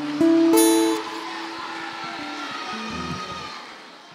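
Acoustic guitar playing the closing notes of a song: two notes plucked in the first half-second, then the last notes ring on and fade away.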